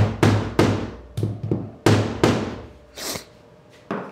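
Rubber mallet tapping short PVC pipe pegs down into holes in an MDF spoil board: a quick run of about seven dull thuds over the first two and a half seconds, then a short rustle near three seconds.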